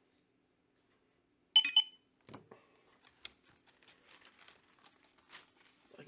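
Faint rustling and crinkling of plastic comic-book bags and backing boards being handled, in scattered small clicks and rustles. About a second and a half in, one brief, sharp, louder sound with a ringing tone.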